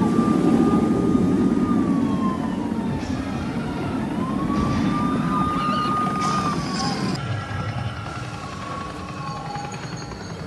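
A wailing siren, rising, holding and falling twice, over the rumble of a roller coaster train on the track that fades after the first few seconds.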